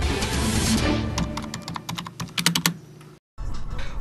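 Transition music sting: a whoosh, then a quick run of sharp clicks, dropping out for a moment near the end.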